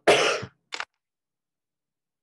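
A man coughing twice: a strong cough of about half a second, then a short second one.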